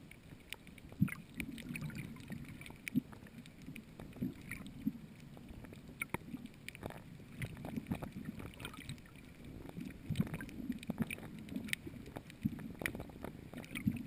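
Muffled underwater sound picked up by a submerged camera: an uneven low rumble of moving water with scattered small clicks and knocks.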